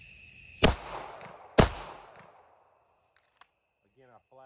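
Two 9mm pistol shots from a SIG P365 XL, about a second apart, each a sharp crack trailed by a fading echo. Crickets chirp steadily in the background.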